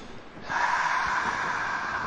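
One long, deep breath lasting nearly two seconds, taken on a cue to relax at the start of a hypnotic induction.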